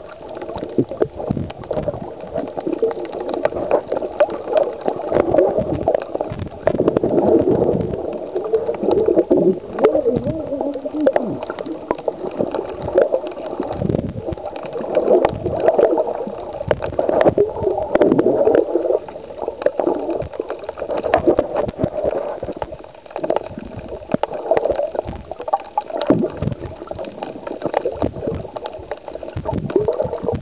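Muffled underwater sound from a camera held below the surface: water gurgling and sloshing around the camera, rising and falling in surges, with many small clicks and knocks.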